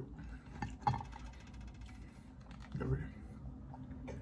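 Light clicks and taps as a soft chocolate chip cookie is picked up off a plate by hand, with a brief murmur from the eater about three seconds in.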